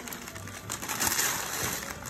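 Wrapping paper crinkling and tearing as a heavily taped gift is cut and pulled open, a steady run of small crackles.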